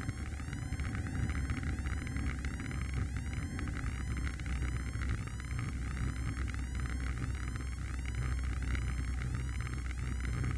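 A Piper Warrior's four-cylinder engine and propeller running at low power during the landing roll-out, heard inside the cabin as a steady low drone with a faint regular pulsing about two to three times a second.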